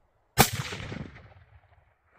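A single hunting rifle shot about half a second in, its report rolling away and fading over about a second.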